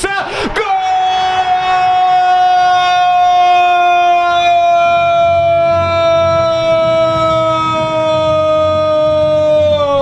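A football commentator's drawn-out goal shout, one high note held for about nine seconds and sliding down at the end, over a stadium crowd cheering the goal.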